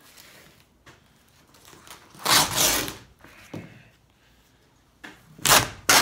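Glued-on vinyl top being ripped off a Cutlass's roof by hand: a long rip about two seconds in, a short one soon after, and another starting near the end.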